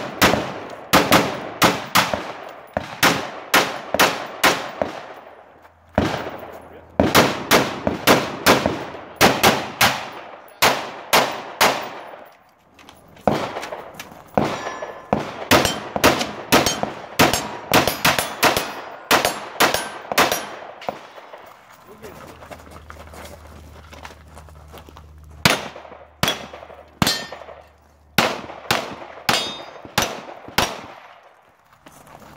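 Strings of rapid gunshots from a Newtown Firearms NF-15, an AR-15-style rifle, two or three shots a second in groups separated by short pauses. A quieter gap of a few seconds holds only a low hum, shortly past the middle.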